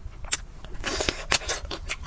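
Biting into and chewing a chocolate-coated Magnum ice cream bar close to the microphone: the hard chocolate shell cracks and crunches in a string of sharp, crisp clicks, busiest about a second in.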